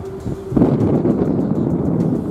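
Steady hum of the car ferry's engines, then about half a second in, louder wind buffeting the microphone that covers it.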